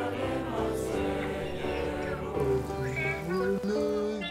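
Music with a choir singing long held notes over a sustained accompaniment.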